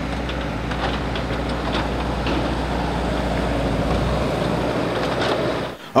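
Skid-steer loader engine running steadily at close range, with a few faint clicks.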